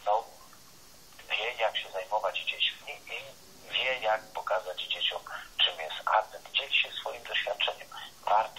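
A person talking over a telephone line: thin, narrow-sounding speech with no low end, pausing briefly about a second in, then going on.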